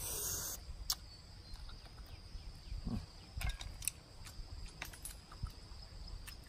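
Quiet eating of a raw blood cockle: scattered light clicks and clinks, with a short hiss at the start and a brief low hum of a voice about three seconds in.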